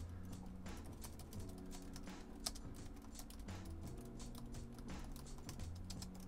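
Quiet, irregular keystrokes on a laptop keyboard, with one sharper key click about two and a half seconds in.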